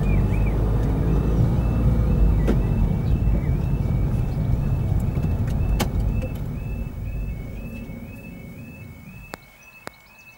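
Car engine and road noise heard from inside the car, fading as the car slows and stops at the crossing barriers. Over it, the level crossing's warbling two-tone alarm steps between its two notes a few times a second. A few sharp clicks come near the end.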